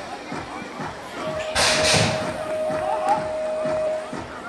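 BMX start gate sequence: a long steady electronic start tone begins about a second in, and about half a second later the metal start gate slams down with a loud clatter as the riders roll off.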